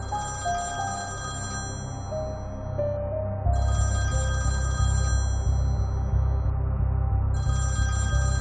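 A telephone ringing in three bursts of about a second and a half each, repeating roughly every three and a half seconds. Under it runs background music with a soft melody of held notes, and a deep bass pulse comes in about three and a half seconds in.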